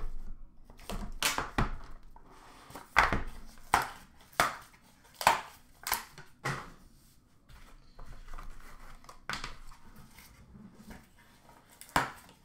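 Hands opening a cardboard trading-card box and handling its packaging and contents: an irregular string of sharp clicks and knocks, with soft rustling between them.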